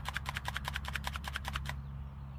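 Quick run of small plastic clicks, about ten a second, stopping shortly before the end: the slide and loose parts of a cheap plastic airsoft BB pistol being worked by hand. The gun is shot-up and its slide only moves part way.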